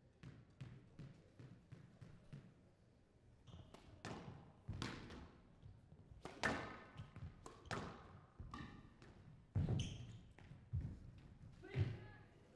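Squash rally: sharp hits of the ball off rackets and the court walls, coming at irregular intervals of a fraction of a second to a second, with the players' footsteps on the court floor.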